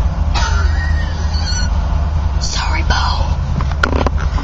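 Steady low rumble of a moving car heard from inside the cabin, with short snatches of voices over it and a sharp click near the end.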